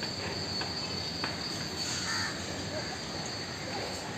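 Outdoor ambience with a steady, high-pitched insect drone, with faint distant children's voices and a few light knocks.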